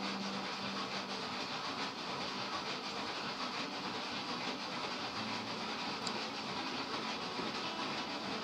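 Steady background hiss with a faint low hum and no speech.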